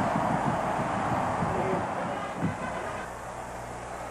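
Stadium crowd cheering for a touchdown, fading out about three seconds in and leaving a low steady hum.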